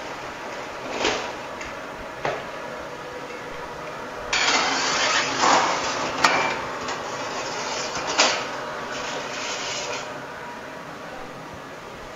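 Metal handling sounds at a bakery deck oven. A few light knocks come as rolls slide off a wire tray into a plastic basket. Then, from about four seconds in, a long rasping scrape with a sharp clank near the middle as a wire tray of baked rolls is drawn out of the oven.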